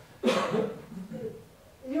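A single sharp cough about a quarter of a second in, followed by a second of low, indistinct speech in a hall.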